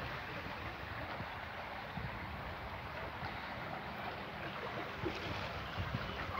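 Steady rushing outdoor background noise with no distinct events.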